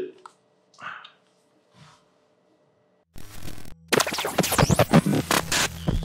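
Glitch-style intro sound effect: a burst of static about three seconds in, then dense scratching and crackling noise with quick sweeping pitches.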